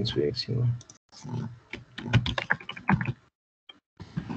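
A voice briefly at the start, then quick clicking of a computer keyboard with some talk among it, stopping a little after three seconds in.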